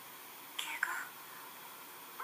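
A brief whispered voice about half a second in, falling in pitch and ending in a small click, over a faint steady hiss.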